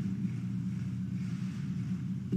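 A pause in speech filled by a steady low hum and faint hiss, the background noise of a microphone and broadcast audio feed.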